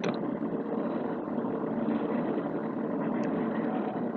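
A steady engine-like noise that runs on evenly without a break.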